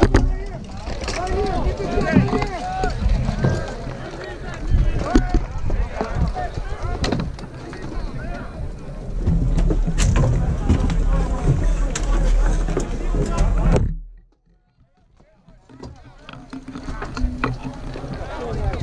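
Mock-battle din: many distant voices shouting and calling, with frequent sharp clacks and knocks, and wind rumbling on the microphone. The sound drops out almost completely about fourteen seconds in and returns about two seconds later.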